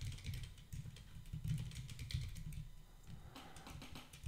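Typing on a computer keyboard: a run of quick, quiet keystroke clicks.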